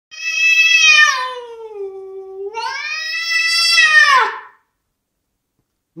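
A house cat's long, drawn-out yowl at a rival cat, lasting about four and a half seconds. The pitch falls, then rises and falls again before it stops. It is a hostile, territorial caterwaul.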